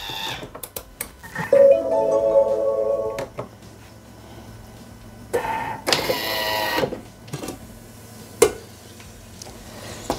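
Thermomix TM6 sounds: a steady electronic tone about a second and a half in, lasting nearly two seconds, then a brighter whirr of about a second and a half from its mechanism, and a sharp click near the end as the lid is released.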